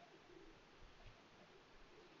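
Near silence: room tone, with a faint low wavering sound in the background.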